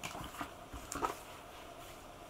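A few soft taps and paper-handling sounds in the first second as comic books are handled and set down on a table.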